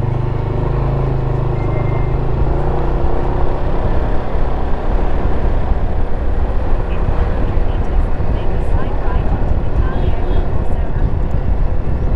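Motorbike engine running while riding along a street, a steady low hum at first. After about three seconds it gives way to a louder, even rush of wind and road noise on the microphone as the bike picks up speed.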